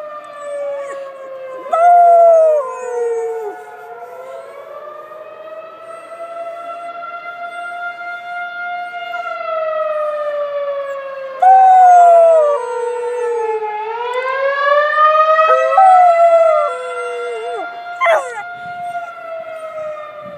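Emergency sirens wailing, rising and falling slowly over several seconds, with an Irish-coat wheaten terrier puppy joining in with short, loud howls about four times.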